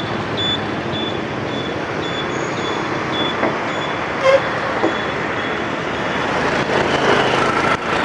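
Steady street traffic of motorbikes and cars passing close by, with a short horn toot about four seconds in. A faint high beep repeats through the first half.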